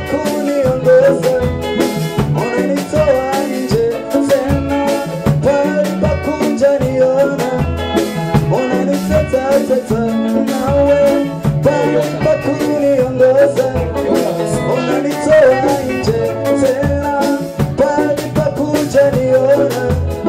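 Live Swahili gospel song: a lead singer's voice over a band with drums and bass keeping a steady upbeat rhythm.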